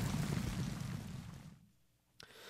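Racecourse ambience with no clear pitch after the finish, fading out to silence about one and a half seconds in.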